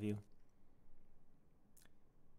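A word spoken by a man ends, then comes a pause of faint room hiss with one short click near the end.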